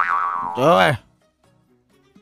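A man's voice making wordless exclamations that sweep up and down in pitch, a second short one following, then dropping to near silence after about a second.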